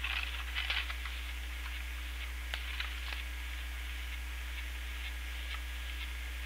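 Steady low electrical hum under a pause in conversation, with a few faint rustles and light clicks of papers being handled in the first second and again around two to three seconds in.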